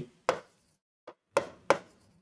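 A pen tapping and knocking against a writing board in four short, sharp clicks as words are written on it.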